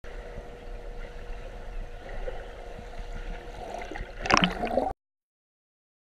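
Muffled underwater sound of a swimming pool heard from a submerged camera as a swimmer crosses, with a low rumble and a faint steady hum. It gets louder and gurgles briefly a little after four seconds, then cuts off suddenly into silence.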